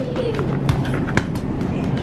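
Store ambience: a steady low hum with a few short, light knocks and a brief faint voice near the start.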